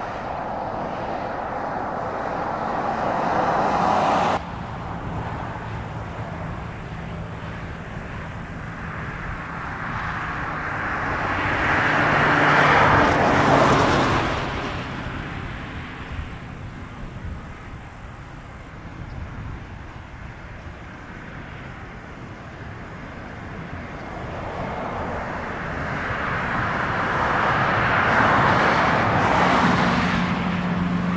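Engine noise that swells and fades, peaking in the middle and building again near the end, with an abrupt cut about four seconds in.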